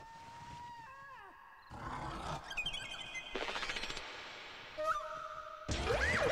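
Film sound effects: a few gliding, whistle-like tones, then noisy swells and short steady tones, with a louder burst of sweeping pitches near the end.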